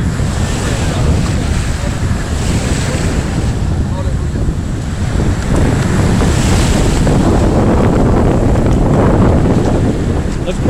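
Wind buffeting the phone's microphone over the steady wash of surf, swelling and easing in slow surges.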